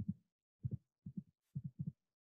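Computer keyboard being typed on: faint, dull key taps, each a quick double tap, about five in two seconds.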